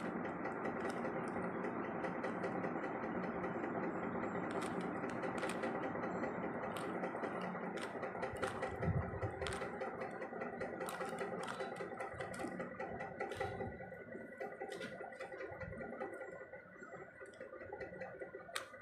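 Windmill puzzle cube being turned by hand, its plastic layers giving scattered short clicks, over a steady background hum that fades over the last few seconds.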